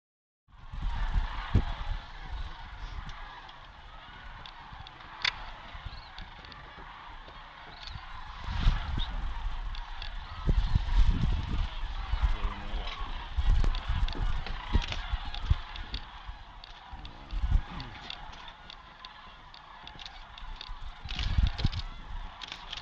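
A large flock of sandhill cranes calling, many rolling, trumpeting calls overlapping in a continuous chorus, with intermittent low rumbles on the microphone.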